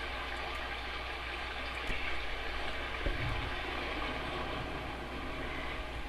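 Steady background noise: an even hiss with a constant low hum, and a brief faint low sound about three seconds in.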